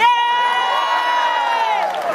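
Crowd of fans cheering, led by one long, high-pitched scream held for nearly two seconds that falls away near the end.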